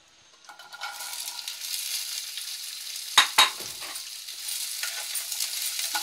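Chopped okra tipped into hot oil in a non-stick wok, setting off a steady sizzle that builds about a second in and carries on. Two sharp knocks sound a little past halfway.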